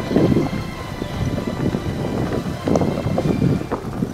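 Mountain bike riding down a dirt and leaf-litter trail: tyres rolling and crunching, with knocks and rattles from the bike over bumps. Wind buffets the microphone in gusts.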